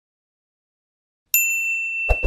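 A single bright ding from a notification-bell sound effect. It comes in suddenly about a second and a half in and rings on as one clear tone.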